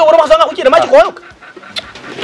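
A voice talking for about the first second, then a brief lull.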